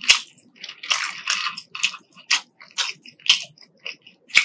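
Close-miked chewing of crispy fried fast food, a run of crisp, irregular crunches and mouth clicks, several a second.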